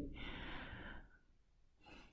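A faint breath out, about a second long, fading away, followed by near silence.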